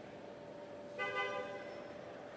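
A single short horn toot about a second in, one steady tone lasting about half a second, over a steady faint background hum.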